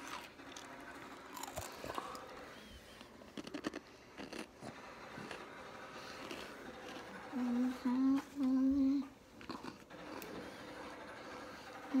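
A girl humming with her mouth closed: three short 'mm-hmm' notes about seven and a half seconds in, and another beginning at the very end. Faint scattered clicks and handling noises come before the hums.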